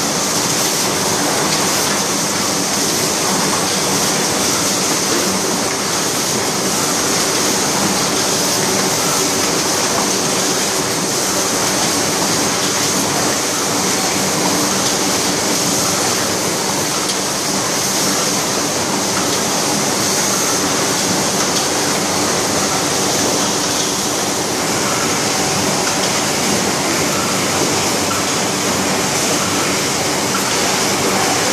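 Rigid-box-making machines and conveyors running on a factory floor: a loud, steady mechanical din with no clear rhythm and no distinct strokes.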